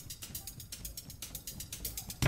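A lull in the dance music where a fast, even clicking rattle of percussion carries on over a faint low background.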